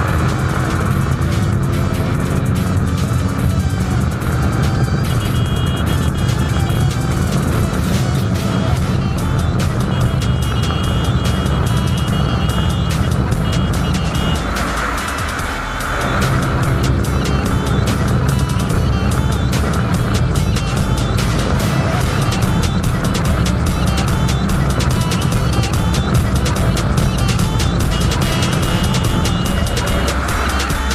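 KTM RC 200's single-cylinder engine pulling hard at full throttle with wind rush, under background music with a steady beat. About fifteen seconds in the sound dips briefly, as at a gear change, then the engine pulls on.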